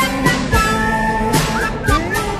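Upbeat theme music with held instrumental notes over regular drum hits, closing the segment.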